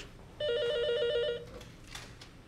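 Corded desk telephone ringing: one trilling ring about a second long, starting about half a second in.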